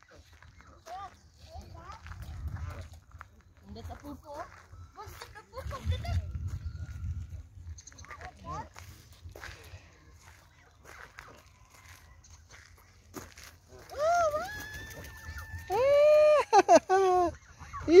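Quiet outdoor ambience with low wind rumble on the microphone. Near the end, a high voice calls out in a few long, drawn-out sounds.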